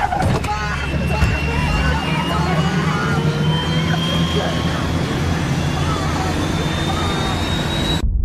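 Film sound mix from inside a moving car: a steady engine drone under agitated, panicked voices, with a thin high tone rising slowly in pitch throughout. Everything cuts off abruptly at the end.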